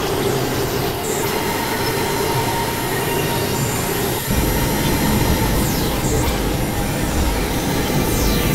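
Experimental synthesizer noise music: a dense wash of hiss with several steady high tones held over it and a couple of falling high sweeps. About halfway through, a heavier low rumble comes in underneath.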